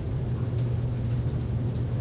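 A steady low hum of room noise, with no other distinct sound.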